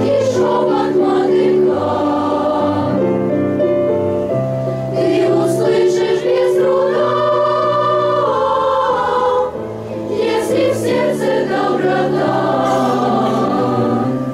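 Children's choir of boys and girls singing together, sustained phrases with a brief breath-pause about nine and a half seconds in.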